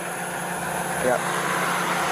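Vehicle engine idling steadily with a low hum and a constant wash of outdoor noise, picked up by a police body-camera microphone.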